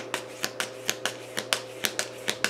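A tarot deck being shuffled by hand, overhand, the cards slapping down from one hand into the other in quick, even clicks, about six a second.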